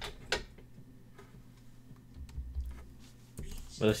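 A few faint, sharp clicks from computer use, the loudest about a third of a second in, over quiet room sound; a voice starts at the very end.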